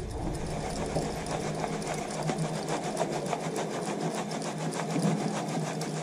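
Flour being sifted through a plastic sieve that is shaken and tapped by hand, making a rapid, even run of light taps and rattles, several a second.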